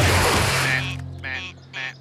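Cartoon sound effects over background music: a loud crash at the start that fades over about a second, then short squawks from the cartoon penguins.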